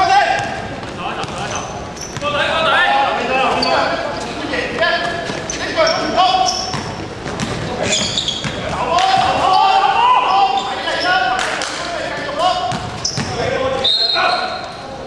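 Basketball bouncing on a sports-hall floor during a game, with players' voices shouting and echoing through the large gym.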